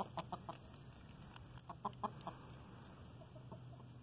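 Domestic chickens clucking softly in short notes, a few in quick succession near the start and again about two seconds in, with fainter ones later.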